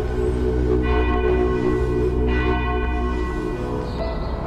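A deep bell tolling, struck a few times, each stroke ringing on over a low drone.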